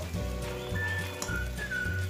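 Background music: a high, single-note lead melody that glides between pitches over a low bass line.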